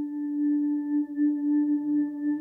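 A sustained bell-like ringing tone with a few fainter higher overtones, held steady in pitch and pulsing gently in loudness.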